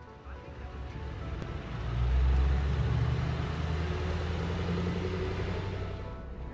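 The engine of a high-axle off-road rescue truck running as it drives, a low rumble that grows louder about two seconds in and then eases off. Faint background music runs underneath.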